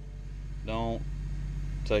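A man's voice: one short spoken syllable about a second in and the start of a word at the end, over a steady low hum.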